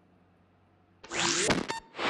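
Whoosh transition sound effect: near silence for the first second, then a loud rising whoosh about a second in, ending in two sharp clicks.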